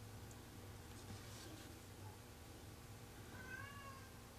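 Near silence: a steady low room hum. Near the end comes a faint, brief, high-pitched call that glides slightly in pitch.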